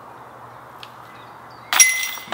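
Disc golf disc hitting the metal chains and basket of a disc golf target near the end: a sudden loud clang with ringing, the sound of a made putt.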